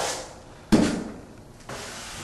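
A 10-inch drywall knife drawing joint compound along a bullnose corner: one scraping stroke starts sharply under a second in and fades away over about a second.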